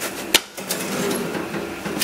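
A single sharp click about a third of a second in, as a hand works the plastic cover of a large Océ photocopier. It is followed by the copier's steady whirr of fans and motors running through its warm-up cycle.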